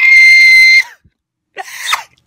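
A young man's very high-pitched scream, held on one note for under a second and then cut off abruptly, followed by a short silence and a brief noise near the end.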